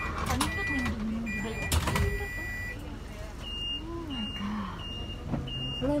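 Bus warning beeper heard from inside the cabin: a long, steady electronic tone repeating about once a second, then from about halfway a quicker, higher beep about twice a second, typical of a reversing alarm as the bus manoeuvres. Two sharp knocks in the first two seconds, the second the loudest sound.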